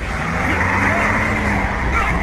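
Film soundtrack of a highway chase: the engine and road noise of a bus and a truck running at speed, with a voice over it.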